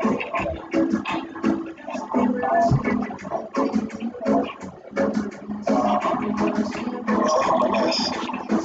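Music playing, with quick, evenly recurring notes throughout.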